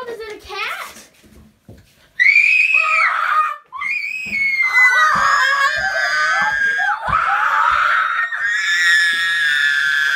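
Several people screaming with excitement at a high pitch: a first scream about two seconds in, then, after a short break, long held screams from overlapping voices until the end.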